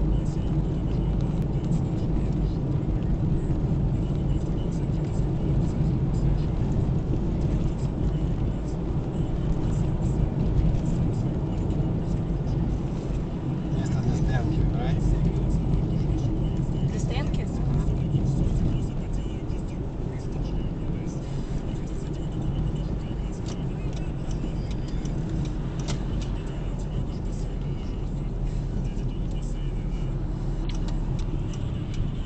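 Steady low rumble of a car's engine and tyres, heard from inside the cabin while driving along a highway; it eases slightly about two-thirds of the way through.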